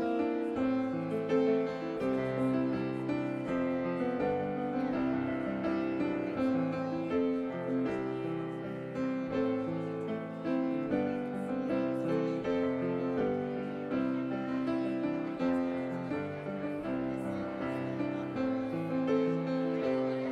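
Instrumental piano music played without voices, a steady run of notes and chords.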